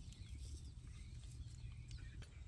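Quiet outdoor background: a faint steady low rumble with a few faint high chirps.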